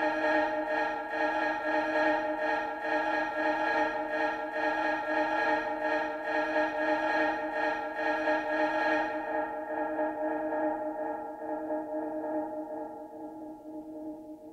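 Electronic techno track: a held synth chord over a steady beat. About nine seconds in, the beat and the bright top drop out and the chord fades down as the track ends.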